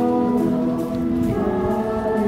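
A choir singing long held chords, the harmony shifting to a new chord about one and a half seconds in.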